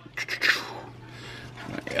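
Small plastic clicks as a panel on an action figure is pressed back into place, followed by a short breathy rush like an exhale.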